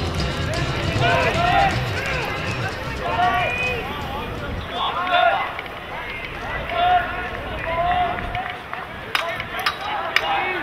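Several voices shouting and calling out across an outdoor lacrosse field during play, short overlapping calls throughout, with a few sharp clacks near the end.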